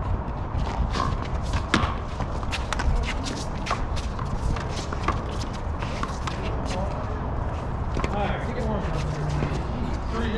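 Small rubber handball being hit by gloved hands and smacking off concrete walls during a rally: a run of sharp smacks at irregular intervals over a steady low rumble.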